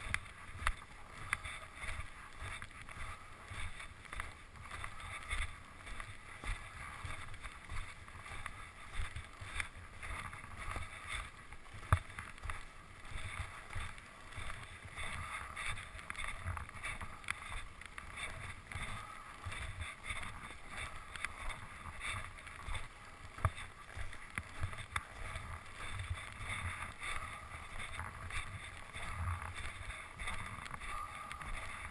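Skis running over snow, a steady hiss, with irregular low rumbling of wind on the microphone and scattered knocks. The sharpest knock comes about twelve seconds in.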